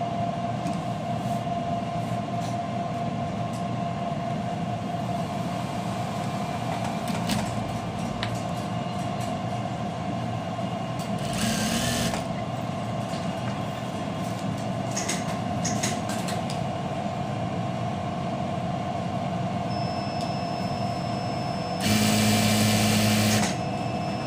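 JUKI single-needle industrial lockstitch sewing machine running as a zipper is stitched onto a garment, with a steady hum throughout. A short louder spell comes about halfway through, and a louder one about a second and a half long comes near the end.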